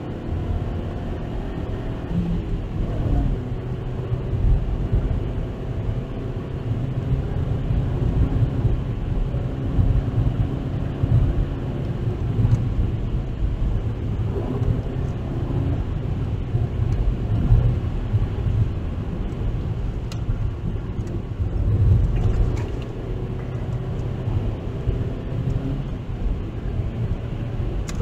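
Inside the cabin of a Mazda 3 with the 1.6 MZR four-cylinder engine, engine and road noise make a steady low rumble as the car is driven at speed.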